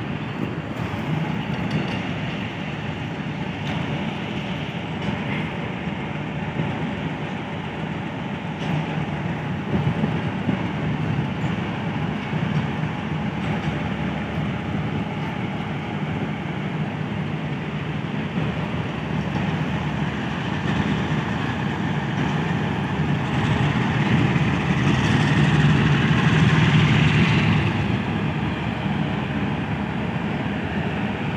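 Pakistan Railways AGE-30 diesel-electric locomotive running with a passenger train rolling along the track: a steady deep engine rumble mixed with wheel and rail noise. It grows louder for a few seconds near the end.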